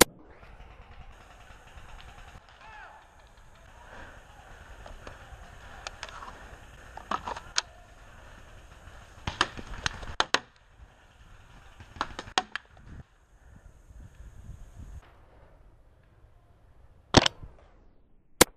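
Paintball markers firing in scattered clusters of two or three quick shots, with a louder single shot near the end.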